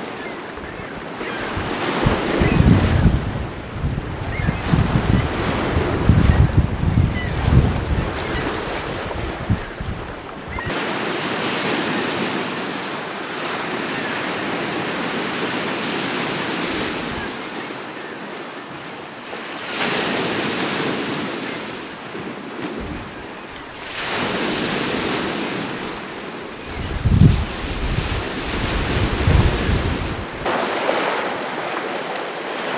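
Wind-driven waves washing and breaking on a rocky shore, a continuous rushing surf. Gusts buffet the microphone with heavy low rumbling through the first ten seconds or so and again near the end.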